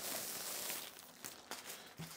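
Faint rustling of a soft white packaging wrap as it is pulled off a VR headset strap, dying away about a second in, followed by a couple of light clicks.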